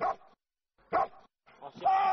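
Kunming wolfdog barking in short single barks about a second apart, with a longer held cry starting near the end: alert barking that tells the handler the hidden target behind the blind has been found.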